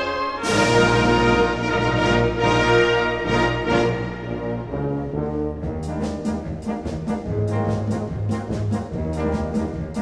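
Military wind band playing, led by brass. A loud crash about half a second in rings out over full sustained chords, and from about six seconds in regular sharp strokes keep a beat under the brass and low bass notes.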